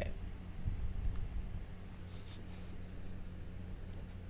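Low steady electrical hum under a faint hiss, with a few soft clicks and scratches about one and two seconds in.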